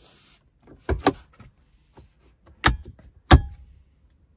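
Centre-console armrest lid of a car being worked by hand: a pair of latch clicks about a second in, then two sharper knocks near the end as the lid is shut.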